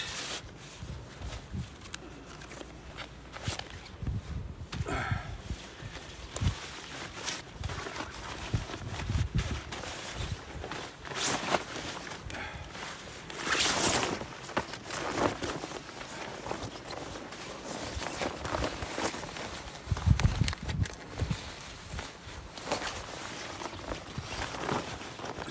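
Military-surplus camouflage poncho being pulled from its stuff bag, unfolded, shaken out and drawn on over the head: irregular rustling and crinkling of the waterproof fabric, louder in bursts, with occasional low rumbles.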